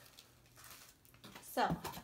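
Near silence: quiet room tone with a few faint rustles of items being handled, then a brief spoken "Oh" near the end.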